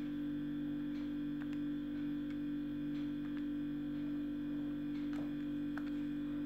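Steady electrical hum, with a few faint clicks of scientific-calculator keys being pressed.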